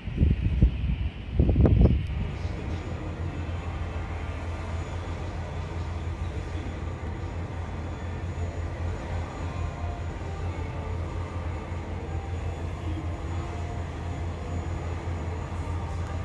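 Wind gusting on the microphone for about the first two seconds, then a steady low mechanical drone.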